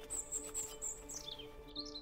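Faint background music holding a low chord, with small birds chirping high and quick over it; one call glides steadily downward about a second in.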